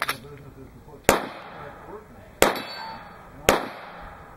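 Three pistol shots fired at a steady, unhurried pace, a little over a second apart, each a sharp crack with a short echo.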